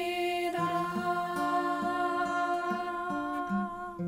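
Women's voices singing a long held note together, accompanied by a picked acoustic guitar whose bass notes change every half second or so.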